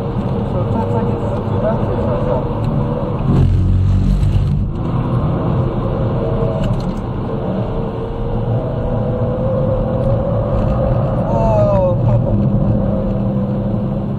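Mercedes-AMG C63's V8 engine heard from inside the cabin, running hard on track under varying throttle. There is a louder low rumble about three and a half seconds in, and a rising engine note near the end.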